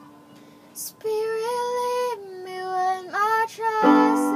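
A girl's voice singing a slow worship melody in held notes that step down and back up, starting about a second in, after a held accompanying chord has faded away.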